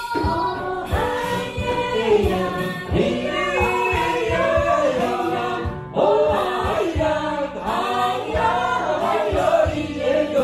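A mixed choir singing a worship song together with a female lead singer on a handheld microphone, accompanied by strummed acoustic guitar and a steady low beat.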